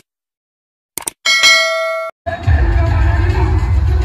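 Subscribe-button sound effect: a couple of quick mouse clicks about a second in, then a bell chime ringing for under a second and cutting off sharply. A little past two seconds in, loud crowd noise over a heavy low rumble takes over.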